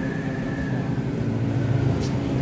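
Steady low machine hum with a faint high whine over it, typical of running plant equipment.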